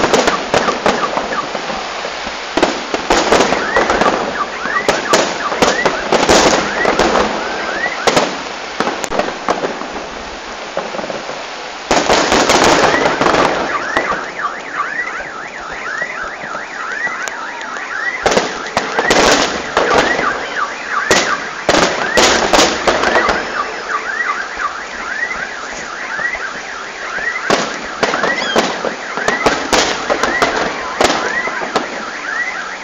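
Aerial fireworks bursting: a string of sharp bangs with crackle between them, thickening into a dense volley about halfway through. A short rising chirp repeats steadily, about twice a second, under the bangs.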